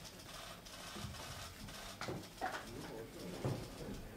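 Faint murmur of voices in a room, with soft knocks and shuffling, the loudest stretch a little past halfway.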